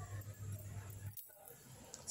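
Faint low electrical hum with a light hiss in a pause between spoken phrases; the sound drops out briefly a little past the middle.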